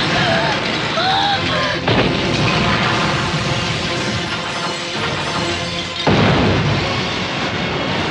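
Film action soundtrack: dramatic music over explosion booms, with sudden loud hits about two seconds in and again about six seconds in, and screaming voices.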